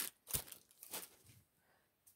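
Tissue paper rustling in a few short, soft crinkles as it is handled and folded into a cardboard box, all within the first second and a half.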